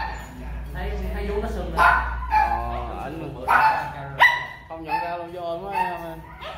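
A dog barking in a few short, sharp yips; the loudest comes about four seconds in.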